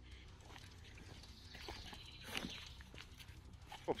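Faint footsteps of a hiker walking down a dirt-and-stone forest trail, a few soft, irregular steps.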